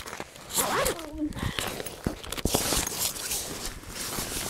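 Backpack zipper pulled open, a dense rasp about two and a half seconds in, among clicks and rustling from handling the bag's fabric.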